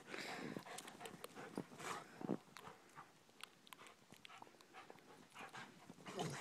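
Faint sounds of two dogs playing in snow: panting and soft scuffles and crunches, mostly in the first couple of seconds, then only a few faint ticks.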